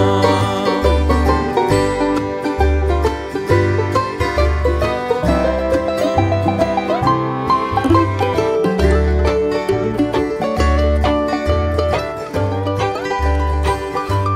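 Bluegrass instrumental break with no singing: a banjo picking quick notes over a steady bass line that alternates between two low notes, with guitar backing.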